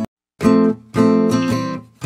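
Acoustic guitar music. After a brief dropout to silence at the start, two chords sound about half a second apart, and the second rings out and fades.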